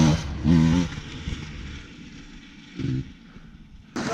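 Dirt bike engine blipped in short throttle bursts: one at the start, another about half a second in and a weaker one near three seconds in, running low between them.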